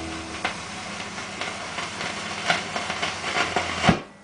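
Vinyl record surface noise from a turntable stylus in the groove of a 45 rpm single after the song has faded out: a steady hiss with scattered irregular clicks and crackles. Just before the end comes one louder click, after which the noise drops away sharply.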